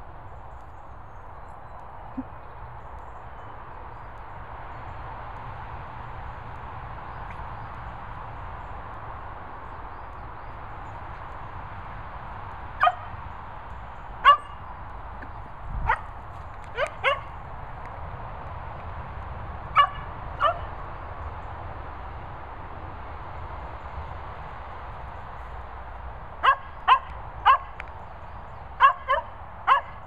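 Dog giving short, high barks: a few scattered ones from about 13 seconds in, then a quicker run of about six near the end, over a steady background hiss.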